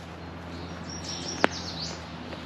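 A songbird calling with a few high chirping notes in the second half, over a steady low hum, with one sharp click about halfway through.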